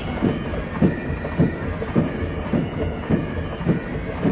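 A contingent of soldiers marching past in step, giving a steady, evenly spaced thudding beat a little under twice a second.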